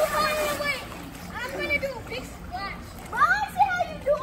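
Children's high-pitched voices in a swimming pool, with water splashing; the biggest splash comes right at the start.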